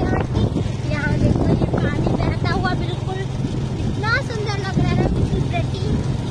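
Motorcycle engine running at a steady speed while riding, with wind buffeting the microphone.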